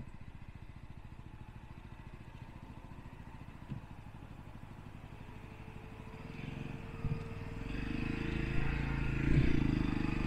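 A Jawa motorcycle's single-cylinder engine running at low speed with a steady low pulse, picking up and getting louder in the second half as the bike moves off along the rough track. A couple of single knocks sound through it.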